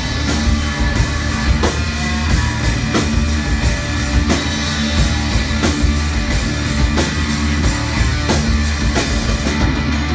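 A live rock band playing an instrumental passage with no singing: electric guitar, electric bass and a drum kit, with steady drum hits over a continuous bass line.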